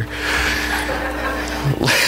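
A congregation laughing together at a joke, many voices blended into one wash, with a steady low hum beneath.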